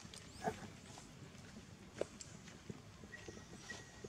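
Quiet background with a few soft, separate clicks and taps. A faint, thin, steady high tone comes in about three seconds in.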